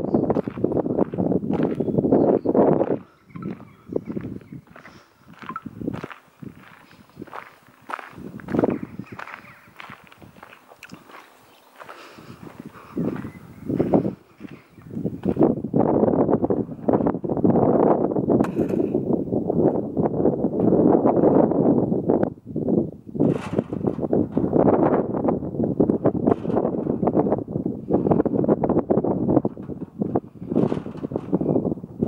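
Footsteps crunching on a gravel path while walking, loud and dense for the first few seconds, sparser through the middle, then loud and steady again over the second half.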